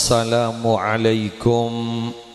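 A man's voice chanting a drawn-out, melodic Arabic-style phrase through a microphone and loudspeakers. It is held on long steady notes with a wavering turn in the middle and a short break before the last note.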